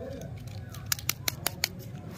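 Crinkly wrapper of a stick lollipop being handled and worked open by fingers, giving a handful of sharp crackles about a second in.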